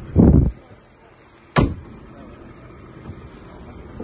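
A car's body being handled: a low, muffled thump right at the start, then a single sharp clunk about a second and a half in, typical of a door or bonnet catch.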